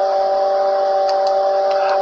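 A steady, unchanging tone made of a few held pitches over a faint hiss, stopping abruptly at the end.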